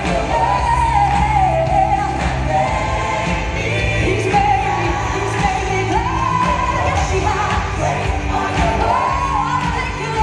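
A church worship band performing live: sung lead and backing vocals with long held notes over keyboard, electric guitar and drums.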